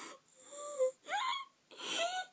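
A girl crying into her hands: wheezy, gasping breaths with two short high wavering sobs in between.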